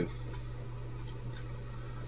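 A pause in speech: quiet room tone with a steady low hum.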